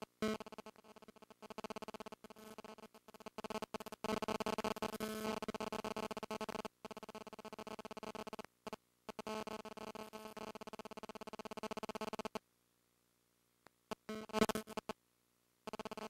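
Electric buzzing hum with many pitched overtones from the ROV's thruster motors as it is driven, cutting in and out in rapid stutters. It runs for about twelve seconds with a few brief breaks, stops, then returns in two short bursts near the end.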